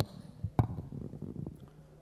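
A sharp click at the start, then a fainter knock about half a second in and soft low thumps and rumbling: a chamber microphone being switched on and handled.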